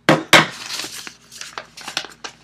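Two sharp knocks close together, then lighter taps and paper rustling as an opened cardboard shipping box and its paper contents are handled.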